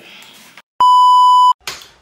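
One loud, steady, high electronic beep lasting under a second, starting abruptly out of silence and stopping just as abruptly. It is a single held tone of the kind edited into a video, such as a censor bleep.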